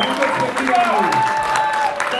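Folk voices singing a short sliding phrase in long held notes, the same phrase coming round about every two seconds, with the audience clapping.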